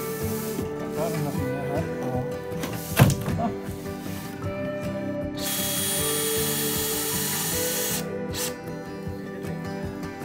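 DeWalt cordless drill running for about two and a half seconds past the middle, under background music. A single sharp knock comes about three seconds in.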